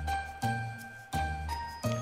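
Short musical jingle between segments: held high notes over a low bass note struck about every 0.7 seconds, with a few notes stepping upward near the end.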